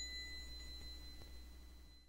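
A high-pitched bell-like ding ringing out and slowly fading away.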